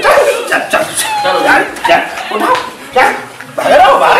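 Men crying out in short, wordless yelps and shouts during a scuffle.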